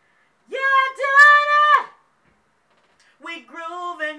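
A woman singing a cappella with no accompaniment: a single high note held steady for over a second, starting about half a second in. After a pause, more singing comes in near the end.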